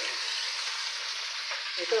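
Raw chicken pieces frying in hot oil in a wok with sautéed onion, garlic and tomato: a steady sizzling hiss as the meat starts to sear.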